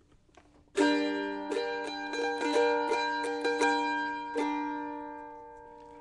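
A plucked string instrument playing the short introduction of a song. Several strummed chords start about a second in, and the last one, at about four and a half seconds, is left to ring and fade.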